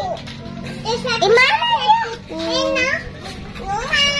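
A young child's voice making short high-pitched sounds without clear words, from about a second in until about three seconds in.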